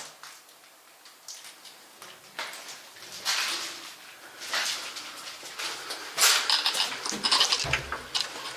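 Footsteps crunching and scraping over fallen plaster and debris on a hard floor, in irregular bursts that grow louder and busier about six seconds in, with a dull thud near the end.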